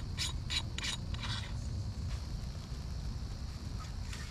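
Camera tripod being adjusted by hand: a quick run of about six ratcheting clicks in the first second and a half, then fainter handling noise, over a steady low rumble.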